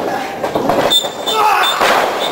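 Pro-wrestling ring mat thudding under the wrestlers as they grapple, with a heavier thud near the end as one is taken down onto the canvas. Shouts and a high, thin squeal come and go in the middle.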